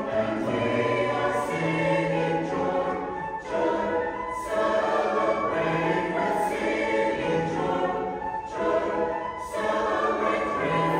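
Mixed church choir singing in long sustained phrases, with short breaks between phrases about three and a half and nine seconds in.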